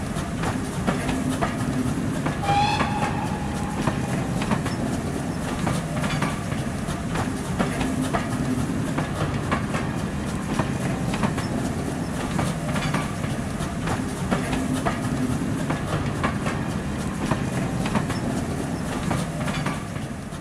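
A train running along the rails: a steady rumble with repeated clicks of the wheels over the rail joints, and a short whistle about two and a half seconds in.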